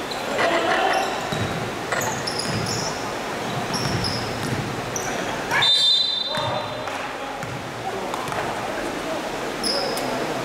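Basketball game in a large echoing gym: sneakers squeaking on the court, the ball bouncing and players calling out. A referee's whistle blows once, briefly, about six seconds in, stopping play.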